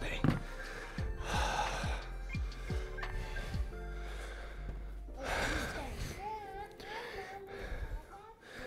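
A man breathing hard from exertion, with two heavy breathy exhales about four seconds apart, over background music.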